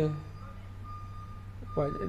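A pause in a man's speech filled by a steady low hum, with a faint high tone that comes and goes in short stretches like a quiet beep. His voice trails off at the start and resumes near the end.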